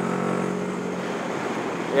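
Motorcycle engine running with a steady hum at cruising speed, with wind rushing past the microphone.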